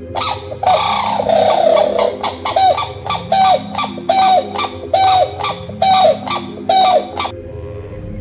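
Grey crowned crane calling: a run of about eight loud honking calls, evenly spaced less than a second apart, which stop suddenly near the end. Steady background music runs underneath.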